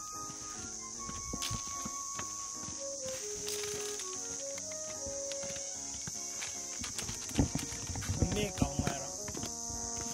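Background music with a simple melody, and, about seven seconds in, a quick run of sharp knocks as ostriches peck feed from the trough with their beaks.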